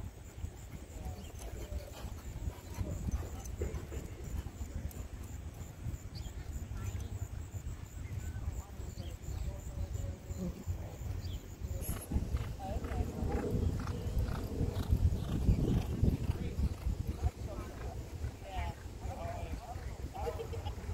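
Rumbling wind noise on the microphone. About twelve seconds in, after a cut, horses going along a dirt track close by: hoofbeats with faint voices.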